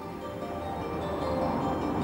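Background music, growing gradually louder.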